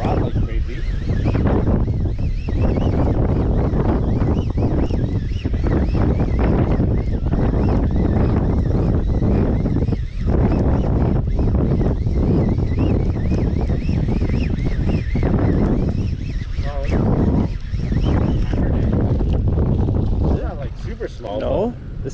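Heavy wind rumbling on the microphone of a boat under way, with water rushing past the stern and a Mercury outboard running.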